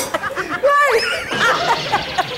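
A man laughing in short chuckling bursts, with a few spoken sounds mixed in.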